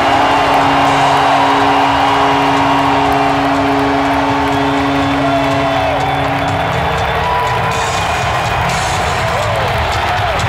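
Loud arena PA music with a long held note lasting about the first seven seconds, over a large hockey crowd cheering.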